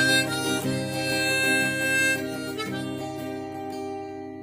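B-flat harmonica playing the melody in an instrumental break over strummed acoustic guitar. After about two seconds the notes hold and slowly fade.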